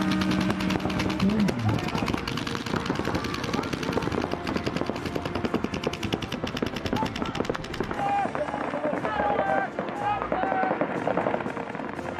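Several electronic paintball markers firing rapid strings of shots at once, densest in the first two thirds.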